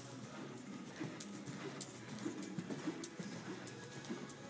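Hoofbeats of a horse cantering on the dirt footing of an arena, an uneven run of dull thuds with occasional sharper clicks.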